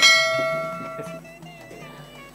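A bell-like chime struck once, ringing out and fading over about a second, over quiet background music.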